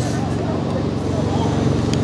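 Steady low drone of city background noise, with faint distant voices.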